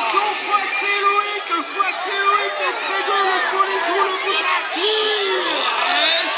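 Crowd of spectators, children's voices among them, shouting and cheering on racing BMX riders, many voices overlapping.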